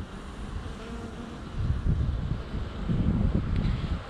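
Honeybees buzzing at a hive entrance. From about a second and a half in, a low rumble of wind on the microphone rises over it.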